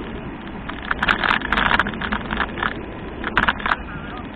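Steady wind and tyre rumble on a bicycle-mounted camera, broken by two clusters of sharp rattling, about a second in and again near the end, as the bike rolls over the uneven crossing.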